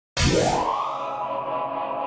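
Logo sting for a TV show's opening: a sound effect that starts abruptly, sweeps up in pitch, then settles into a held, ringing chord that slowly fades.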